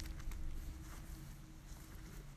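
Low background noise with a faint low rumble and a few soft rustles from hands handling a deck of tarot cards.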